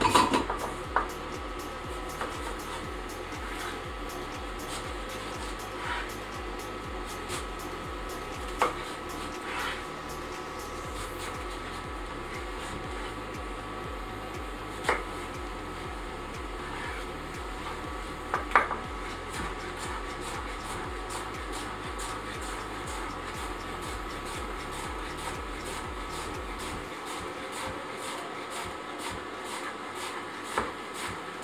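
Kitchen knife cutting a courgette on a wooden chopping board, with a handful of sharp knocks as the blade comes down on the board, scattered through the first twenty seconds. A steady background hum runs underneath.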